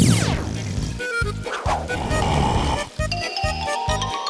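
Cartoon background music with a steady, bouncy beat. A quick falling swoop sound effect opens it, and a short cartoon vocal sound effect comes about a second and a half in.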